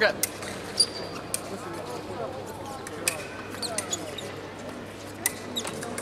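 A fencer's short shout right at the start, then scattered sharp clicks and knocks of footwork and gear on the fencing piste, with a couple of brief high beeps, over a steady murmur of voices in the hall.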